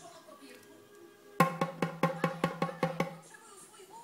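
Small djembe hand drum struck by hand in a quick, even run of about a dozen strokes starting about a second and a half in, each stroke with the same low ring, the first the loudest.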